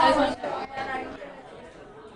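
Indistinct chatter: people's voices talking in a large room, one voice clear at the start, then quieter murmuring voices.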